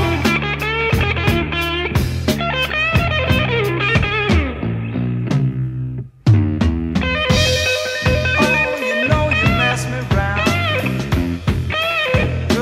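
A 1970s southern/blues hard-rock trio playing an instrumental passage: an electric guitar lead with bent notes over bass guitar and drums. About halfway through the band stops for an instant and comes straight back in on a hit.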